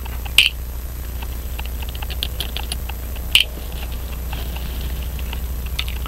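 Small sharp metallic clicks from watchmaker's tools and small parts being handled at a pocket watch movement: two distinct clicks, one about half a second in and one a little over three seconds in, with faint light tapping between them. A steady low hum runs underneath.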